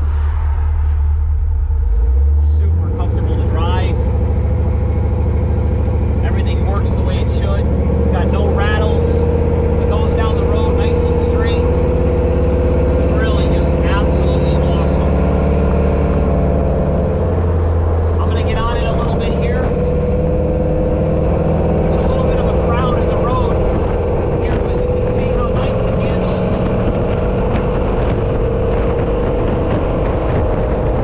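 A custom 1976 Ford Bronco's 351 Windsor V8 running as it drives along the road, heard from inside the cab, with the engine note changing about three seconds in and again a little past halfway.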